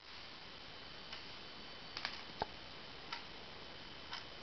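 Faint handling noise from a camera being moved: four soft, irregular clicks and taps, the loudest a little past halfway, over a steady low hiss.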